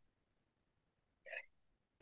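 Near silence, broken about a second and a quarter in by one short, sharp intake of breath from a woman just before she speaks.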